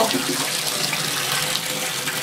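Bath tap running steadily, water pouring into a filling bathtub.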